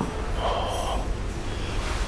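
A short breath-like sound from a person, about half a second in, over a steady low rumble.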